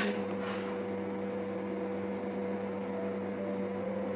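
Steady hum: a low tone with a fainter, higher tone above it, holding even throughout.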